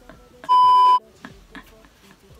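A single steady, high-pitched electronic bleep, about half a second long, starting and stopping abruptly: an edited-in censor bleep tone.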